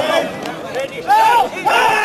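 Men's voices shouting loudly in two bursts, about a second in and again near the end, reacting to a tackle that leaves a player on the ground in a football match.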